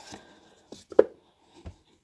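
Cardboard retail box being handled and opened by hand: a few light clicks and knocks, the sharpest about a second in, and a soft low thump near the end.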